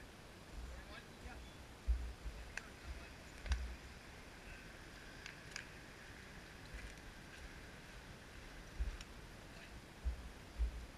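Faint open-air ambience at a wiffleball field: low rumbling thumps now and then, a few light clicks, and faint distant voices.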